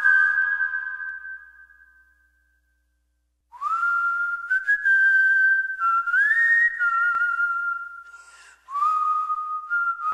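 Whistle-like tones. A held high note fades out over the first two seconds, and after a short silence comes a string of held high notes that slide up or down into each new pitch.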